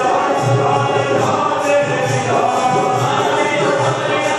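Group singing with music, several voices together over a steady low beat about twice a second.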